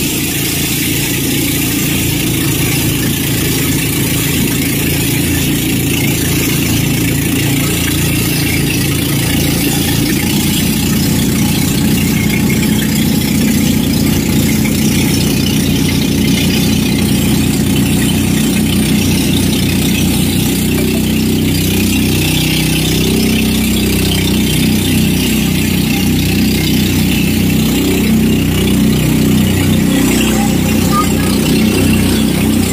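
Engine of a bangka outrigger boat running steadily while under way, with a constant hiss over it; its note wavers a little in the last third.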